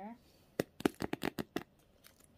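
Hands handling a patent leather handbag and its plastic-wrapped metal charms: a quick run of about seven sharp clicks and taps in about a second, about half a second in.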